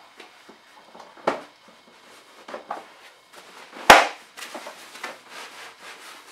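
Plastic carry handle of an infant car seat on a pram being swung back by hand: a sharp click about a second in and a louder click about four seconds in as it locks, with a few lighter clicks and handling rattles between.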